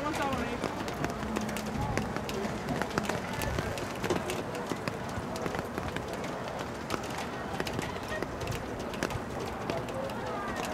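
Outdoor soccer-match ambience: distant, indistinct voices of players and spectators calling out over a steady background noise, with scattered short clicks and taps.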